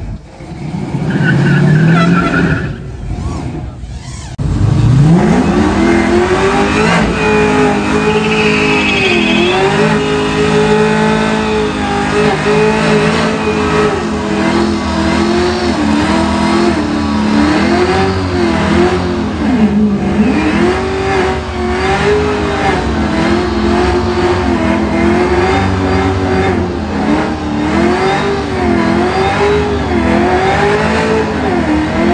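Chevrolet C10 pickups doing burnouts. About four seconds in, a truck's engine revs up steeply to high rpm and is held there, its pitch dipping and climbing back over and over as the rear tyres spin in smoke.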